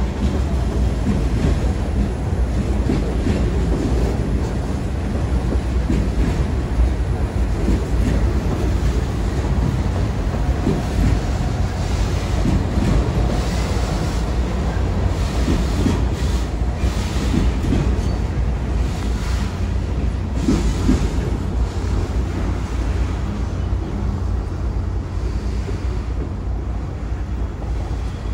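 Freight train of refrigerated boxcars rolling past, a steady rumble of steel wheels on rail with clacks over the rail joints.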